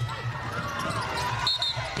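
Basketball arena sound during live play: crowd noise with sneakers squeaking on the hardwood court, and a short high tone about a second and a half in.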